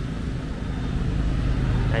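Steady low rumble of motorbike and street traffic.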